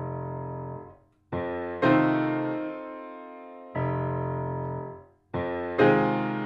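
Grand piano chords struck one after another, each left to ring and slowly fade with the sustain pedal down, giving a full, roomy sound. Twice, about a second in and again near five seconds, the ringing is cut off short by the dampers before the next chords are struck.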